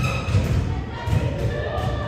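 A basketball bouncing on a hardwood gym floor: repeated thuds, a few a second, in a large echoing hall.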